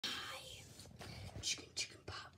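A person whispering: breathy, unvoiced speech with two short hissy bursts about a second and a half in and near the end.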